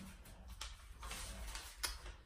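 Paper pages of a bullet journal being flipped through by hand: a few faint page flicks and rustles, the sharpest near the end.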